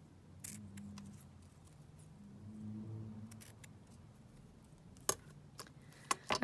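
Scissors cutting through fabric ribbon: a few short, quiet snips, with the sharpest about half a second in and again about five seconds in.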